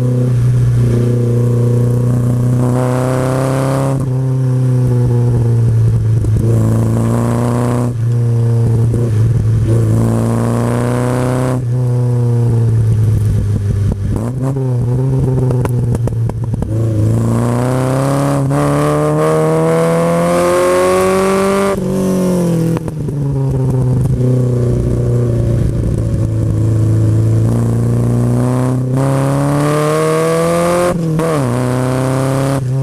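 1959 Triumph TR3A's four-cylinder engine heard from the open cockpit, driven hard on a sprint run. The revs climb, hold and drop several times as the car accelerates, lifts off and changes gear, with a rougher, uneven patch about halfway through.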